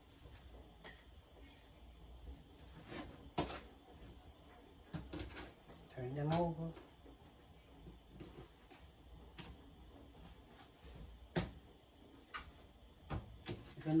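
Quiet handling of fish fillets on a plate and cutting board: sparse light clicks and taps, with two sharper knocks, one about three and a half seconds in and one about eleven seconds in. A brief murmur of voice comes about six seconds in.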